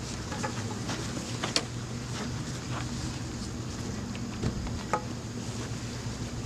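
A steady low mechanical hum, like a running engine, with a few sharp knocks: one about a second and a half in and two close together near five seconds.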